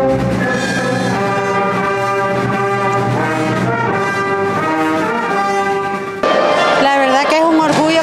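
Orchestra playing held chords led by brass. At about six seconds it cuts off abruptly to a woman speaking in a hall.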